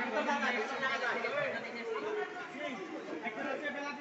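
Several people talking at once: overlapping, indistinct chatter.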